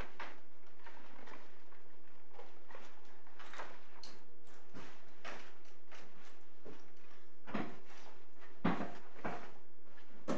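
Scattered knocks, bumps and shuffling of people moving about and handling things in a courtroom, over a low steady hum, with a few louder bumps near the end.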